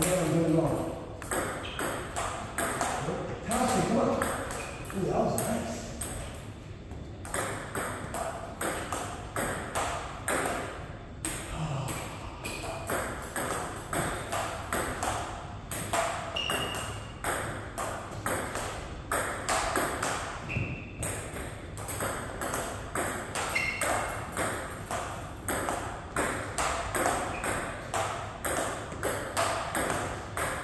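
Table tennis ball being hit back and forth in rallies: a run of quick, sharp clicks from paddle strikes and bounces on the table, with short pauses between points.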